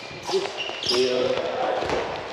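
Handballs thudding on the wooden floor of a sports hall, a few sharp knocks, with distant voices echoing in the hall.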